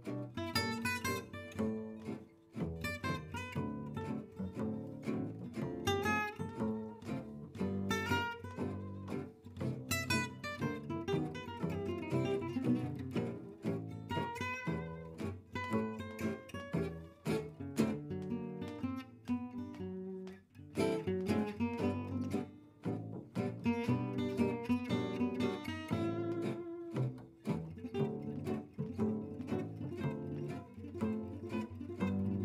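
Live gypsy jazz (jazz manouche) played on acoustic guitars and pizzicato double bass: a lead guitar picks quick melodic lines over rhythm guitar and a plucked bass line.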